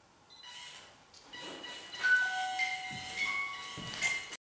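A series of electronic chiming tones at several steady pitches, entering one after another and overlapping, louder from about halfway through; it cuts off abruptly.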